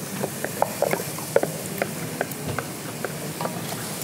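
Scattered light clicks and taps of a spoon and bowl against a cooking pot as a pale batter for amala is poured into boiled water, over faint kitchen room noise.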